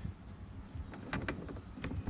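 A few faint clicks and rattles of a battery charger's crocodile clip and cable being handled while the clip is being fitted, over a low steady background.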